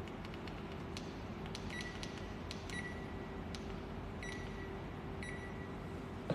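Faint room tone with a steady low hum and scattered light clicks. Four short, high electronic beeps sound at about one-second intervals, each beginning with a click.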